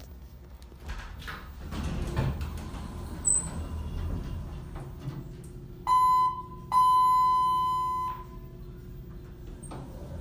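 ThyssenKrupp Signa4 hydraulic elevator rumbling as the car slows and levels. Then the down-direction hall lantern sounds two electronic chime tones at the same pitch: the first cut short, the second longer and fading. A faint hum follows while the doors slide open.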